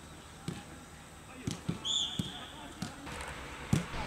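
Footballs being kicked on a grass pitch during a passing drill: a series of short, dull thuds, about seven in four seconds at irregular spacing. A brief high chirp sounds about halfway through.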